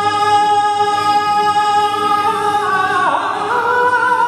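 Male flamenco cante in a granaína: the singer holds one long high note, then near the end bends it down in a wavering, ornamented turn before settling on the next note.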